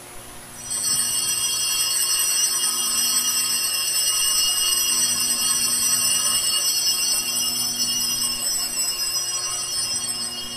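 Altar bells rung at the elevation of the chalice during the consecration of the Mass. The bright, sustained ringing starts about half a second in, holds steady and eases off near the end.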